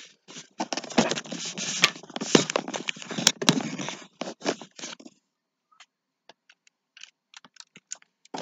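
Close handling noise at the microphone: dense scraping and rustling with sharp clicks for about five seconds, then scattered light clicks and taps.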